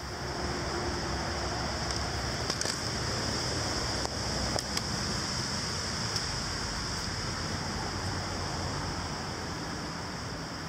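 Steady roar of highway traffic passing beneath a caged footbridge, with a few light clicks.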